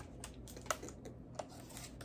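Faint, scattered light clicks and taps as a boxed set of bowls, chopsticks and spoons is handled, with a low room hum beneath.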